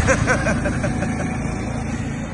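A motor vehicle's engine running steadily with a low drone, and a man laughing briefly at the start.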